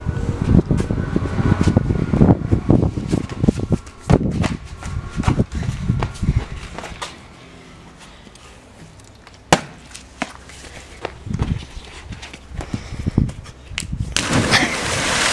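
Raw outdoor camera sound with no music: an uneven low rumble, loud for the first half and quieter after, with scattered sharp knocks and taps throughout. One knock stands out about nine and a half seconds in.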